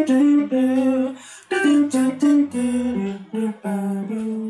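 Electric guitar playing a single-note jazz line, with a voice humming the same melody along with it. The notes step up and down, with a brief pause about a second and a half in.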